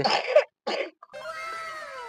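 A cat meowing: one long call that slowly falls in pitch, starting about a second in.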